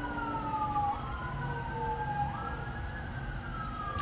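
Emergency vehicle siren wailing, its pitch gliding slowly down and back up in long sweeps, with two wails overlapping, heard through an open door.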